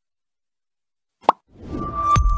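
Dead silence, then a single short, sharp pop sound effect just past halfway, followed by a swelling whoosh that rises into an electronic outro jingle.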